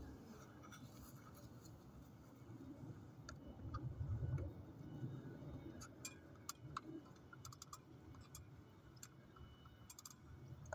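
Faint, scattered small clicks and ticks, more of them in the second half, with a soft low thudding swell about four seconds in: a man climbing an aluminium ladder and handling Christmas light strands.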